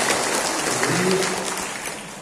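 Audience applauding, the clapping dying away toward the end.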